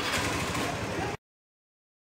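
Street noise with a motor vehicle engine running, which cuts off abruptly just over a second in.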